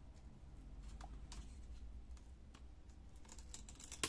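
Faint, scattered clicks and light taps of small plastic and metal laptop parts being handled while the CPU fan assembly is worked loose, with a quick run of clicks near the end.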